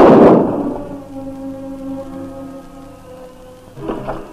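A sudden loud crash, dying away over about a second and a half, over orchestral background music holding steady chords.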